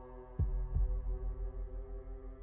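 Dark ambient background music: a held drone with a low double thump about half a second in, like a heartbeat.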